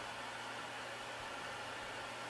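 Steady faint hiss with a low hum underneath; no distinct event.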